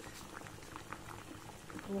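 Water at a rolling boil in a stainless steel pot with two eggs in it, a steady bubbling with many small pops.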